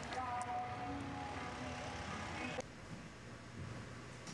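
Faint street background: traffic hum with faint voices. About two and a half seconds in it cuts off suddenly to a quieter, steady room hush.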